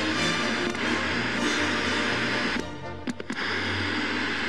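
Theme music of a TV programme's opening title sequence, with a brief drop in level and a few sharp clicks about three seconds in.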